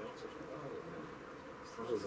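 Faint, steady background murmur of distant voices at an open-air football ground, with a brief louder call near the end.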